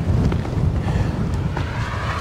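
Strong wind buffeting the microphone: a low, uneven rumble that rises and falls with the gusts.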